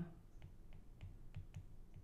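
A handful of faint, light clicks from a stylus tapping and writing on a digital tablet as numbers are handwritten.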